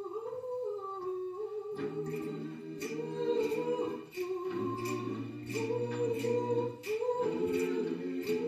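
Mixed a cappella choir singing a South African song in close harmony. At the start one voice slides upward, then about two seconds in the full group comes in with a low bass line under the chords, over a steady sharp beat about twice a second.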